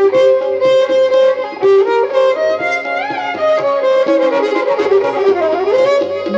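Instrumental music: a melody of held notes with sliding pitch bends, over a light, regular beat.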